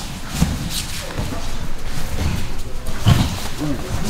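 Two grapplers rolling on foam training mats: bodies scuffling and thudding irregularly, with a louder thump about three seconds in, over voices in the room.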